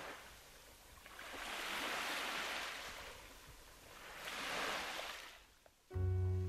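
Ocean surf washing onto a sandy beach: two waves swell and fade away, a couple of seconds apart.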